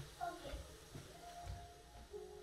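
Soft footsteps, two low thumps about a second apart, with faint snatches of voice.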